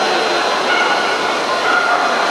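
A dog barking over the steady background noise of a busy show hall.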